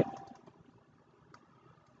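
Near-quiet room tone with a few faint computer mouse clicks, the clearest about a second and a half in.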